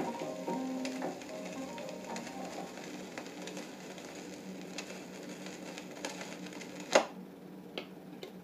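The last notes of a reggae dub 45 fade out on a turntable, leaving the stylus in the run-out groove with surface hiss, a low steady hum and occasional faint ticks. About seven seconds in there is one sharp, loud click as the tonearm is lifted off the record.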